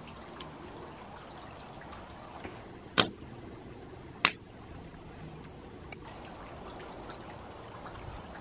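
Fire in a fire pit crackling quietly, with two sharp pops a little over a second apart midway.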